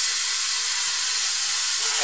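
CNC plasma torch cutting sheet metal: the plasma arc gives a steady, loud hiss.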